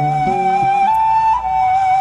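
Traditional Turkish makam music: a flute holds one long note as the last notes of a plucked-string piece die away in the first half-second, and the flute steps briefly up a note about halfway through. The flute piece is the sample in makam Hicaz.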